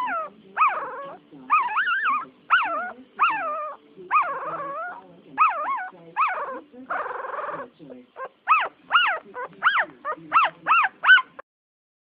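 Newborn puppy crying: a long string of high, squeaky whimpers, each rising and falling in pitch. Near the end the cries come shorter and quicker, about two a second.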